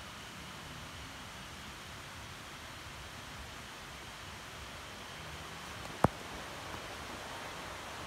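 Steady quiet forest ambience, an even background hiss, with one sharp click about six seconds in.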